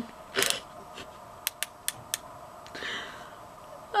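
A few short, sharp clicks in quick succession about two seconds in, after a brief noisy rustle near the start, over a faint steady hum in a small room.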